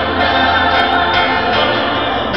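Gospel vocal group singing together in harmony, the voices held and gliding through sustained notes without a break, over a steady low bass.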